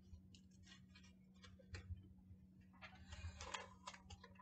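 Faint crinkling and clicking of a snack bag of sunflower seeds as a hand picks through it for a seed, with a short burst of rustling about three seconds in.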